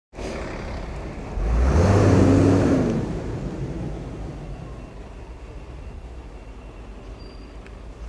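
A motor vehicle passes close by, its engine rumble swelling to a peak about two seconds in and then fading into a steady low hum of traffic.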